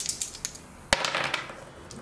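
Defence dice rolled on a gaming table: a few light clicks, then a sharp knock about a second in as the dice land, with a short clatter as they settle.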